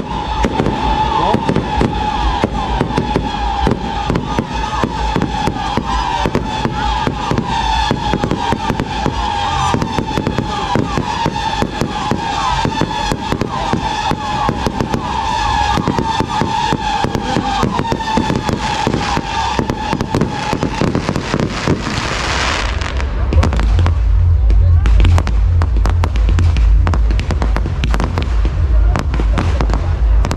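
Fireworks display: dense crackling with a continuous wavering whistle over it for the first two-thirds, then heavier low booming and rumbling from about two-thirds of the way in.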